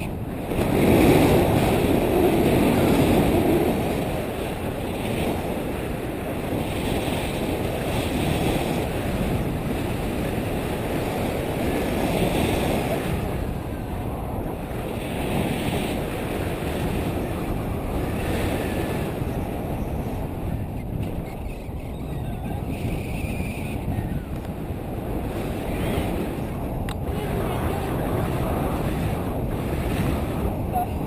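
Flight airflow buffeting the microphone of a camera on a selfie stick under a tandem paraglider: a steady, low rushing noise. It is loudest in a stronger gust about one to four seconds in.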